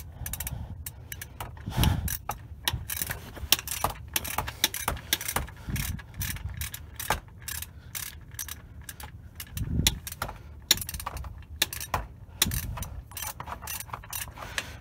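Socket ratchet clicking in quick irregular runs as the 15 mm oil pan drain plug is screwed back in and snugged up, with a few dull knocks of the tool against the pan.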